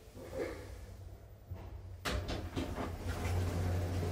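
Schindler 3300 elevator's automatic sliding doors opening: a sudden start about two seconds in, then the door operator running with a low hum that grows louder near the end as the panels slide apart.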